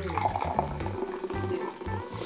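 Fizzy soda poured from a can into a glass, over background music.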